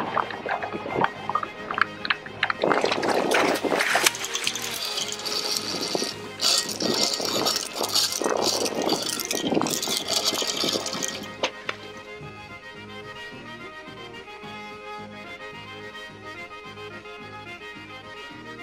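Heavy water splashing and churning at the side of the boat as a hooked shark thrashes, in irregular bursts over background music. The splashing stops about twelve seconds in, leaving only the music.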